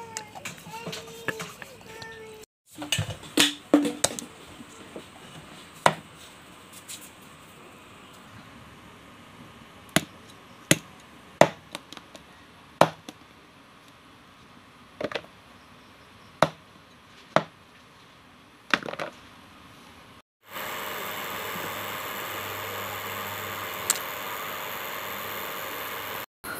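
A knife chopping dried eel on a round wooden block: about fifteen sharp strikes, irregularly spaced, several in quick succession at first and then a second or more apart. Near the end a steady hiss takes over.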